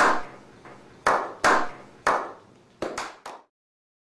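Seven sharp hand claps, each with a ringing echo, spaced unevenly and coming quicker near the end, stopping about three and a half seconds in.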